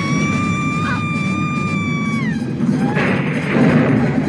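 Film soundtrack: a woman's long, high scream held at a steady pitch, dropping away about two seconds in, over music.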